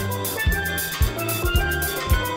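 A steel pan playing a melody over a backing of bass and drums, with a steady beat of about two thumps a second.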